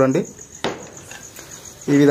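A cricket trilling steadily in the background, a high, rapidly pulsing chirp. A single sharp click sounds about two thirds of a second in.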